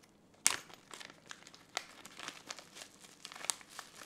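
A small resealable plastic bag crinkling as it is pulled open and handled, starting with a sharp crackle about half a second in and then irregular crackles.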